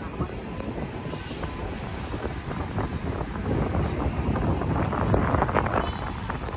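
Wind noise on the microphone, a steady low rumble, with people's voices in the background.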